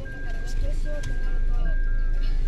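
Music with a voice in it, over a steady high electronic tone that cuts out briefly about once a second, and a low, steady rumble underneath.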